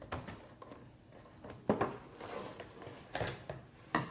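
Scissors cutting into a cardboard-and-plastic toy box: a few sharp snips and clicks of the blades, with rustling of the packaging between them.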